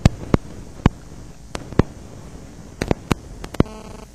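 About ten sharp clicks at irregular intervals, over a low steady hum.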